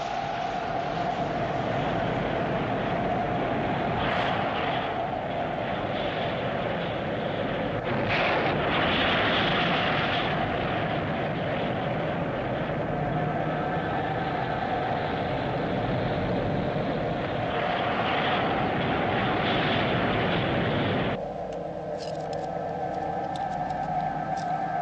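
Spacecraft engine sound effect from a 1970s TV science-fiction series: a steady rushing rocket noise over a constant hum, swelling louder several times. About three seconds before the end it cuts down suddenly to a quieter cabin hum with thin steady electronic tones and a few faint clicks.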